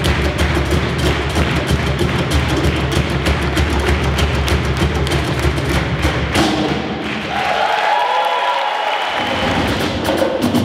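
Percussion ensemble playing drums live: a fast, dense run of deep drum and stick strokes. About six seconds in, the drumming stops and a sustained, wavering higher sound carries on without any beat.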